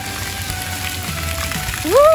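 Splash pad fountain jets spraying water, a steady hiss, under faint background music; a voice calls "Woo!" near the end.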